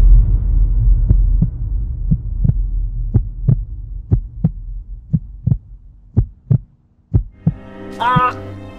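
Heartbeat sound effect: paired low thumps about once a second, growing fainter, over a deep rumble that fades away.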